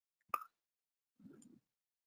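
A single short click about a third of a second in, then a faint low murmur a little over a second in. The rest is near silence.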